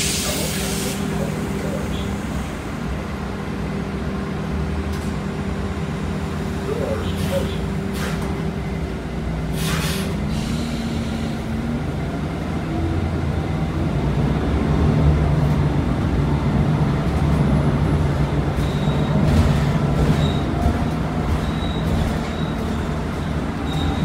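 Cabin sound of a 2019 Nova Bus LFS city bus: a steady low drivetrain drone with a few held tones, broken by short hisses of air near the start and about ten seconds in. After the second hiss a tone glides upward and the drone grows louder as the bus pulls away from the stop.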